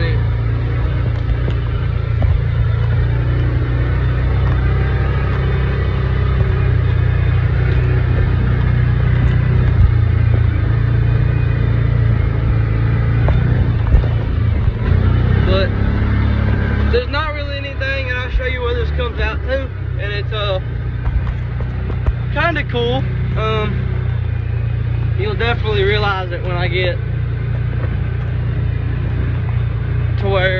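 Side-by-side UTV engine running with a steady low drone as it drives along a rough trail. A voice talks over it in the second half.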